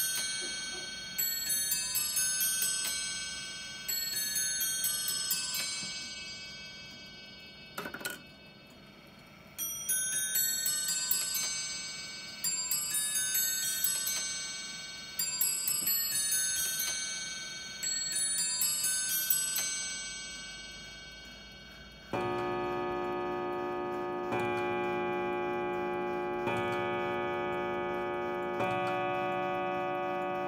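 A Victorian Webster bracket clock chiming the hour on its bells: quick runs of ringing notes repeat about every three seconds, with a single knock about eight seconds in. The chime stops just before two-thirds of the way through. After a short pause, deeper, longer-ringing hour strikes begin, one about every two seconds.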